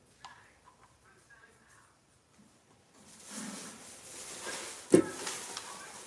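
Knife trimming the skin off aloe vera gel on a plastic cutting board: faint, sparse cutting sounds and small clicks, then one sharp knock of the blade on the board about five seconds in.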